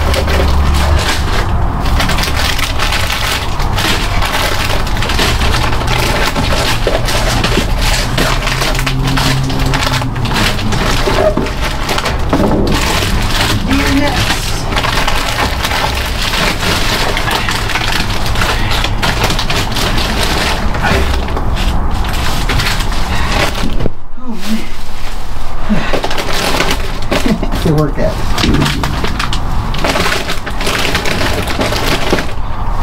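Continuous loud rustling and crinkling of plastic bags and packaged food being handled close to the microphone, as boxes and packets are picked up and packed into a tote bag.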